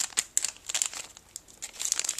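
Clear cellophane bag crinkling in the hands as it is handled: a quick run of crackles in the first half second, quieter through the middle, picking up again near the end.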